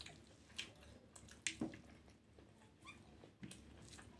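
Faint, wet eating sounds: rice mixed with mutton head curry squished by hand on a plate, and mouth chewing. Scattered small clicks, the sharpest about a second and a half in.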